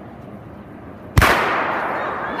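A starting gun fires once, about a second in, a single sharp crack that rings on in the echo of a large indoor hall. Before it there is only low, steady background noise.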